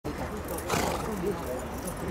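Indistinct voices of people talking, over a steady low rumble of outdoor background noise, with a brief noisy burst a little under a second in.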